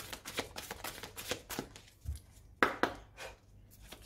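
A deck of heart-chakra oracle cards shuffled by hand: a quick, irregular run of soft card slaps and flicks, loudest about two and a half seconds in.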